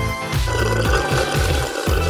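Slurping of soda drawn up through a paper straw, starting about half a second in, over background music with a steady bass line.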